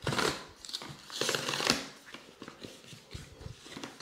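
Rigid cardboard box being opened by hand: two papery scraping slides as the lid comes off, then light scattered taps and clicks as the inner tray is handled.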